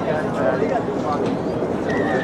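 Sideline chatter: several voices talking at once, none clearly in front, over a steady noisy rumble.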